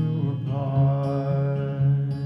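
Acoustic guitar chords ringing under a long held vocal note.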